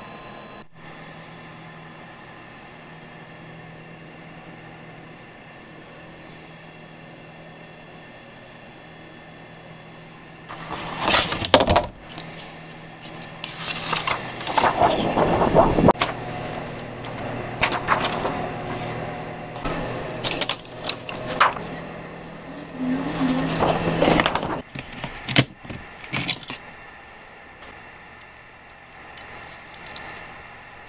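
Kyocera Ecosys laser printer: a steady low hum, then from about ten seconds in roughly fourteen seconds of irregular mechanical clatter and whirring as a laser transparency sheet is fed through the manual tray and printed, ending suddenly.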